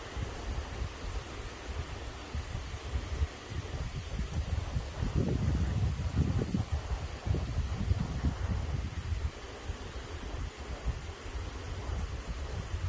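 Wind buffeting the microphone as an uneven low rumble, with a few stronger stretches of muffled rustling and handling noise around the middle.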